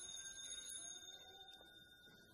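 Altar bell ringing out with several high, clear tones that slowly fade after being struck just before, marking the elevation of the chalice at the consecration.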